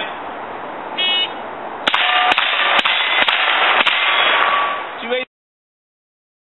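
An electronic shot timer beeps once. About a second later a rifle fires six quick shots, roughly half a second apart, at steel targets that ring briefly between the shots.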